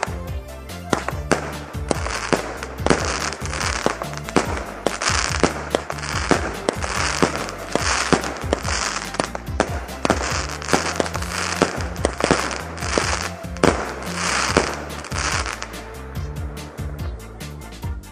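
A firework cake firing a rapid series of shots, about two a second, each a sharp bang followed by a short hiss, with crackling. The shots stop a couple of seconds before the end. Background music plays throughout.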